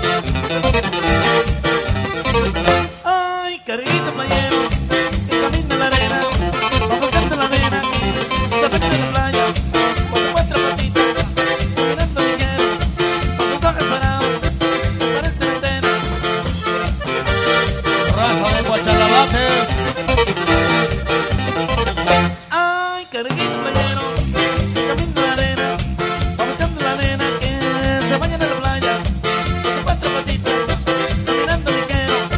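Instrumental stretch of a corrido played by an accordion-led regional Mexican band over a steady bass beat. The band cuts out briefly twice, a few seconds in and again about two-thirds through.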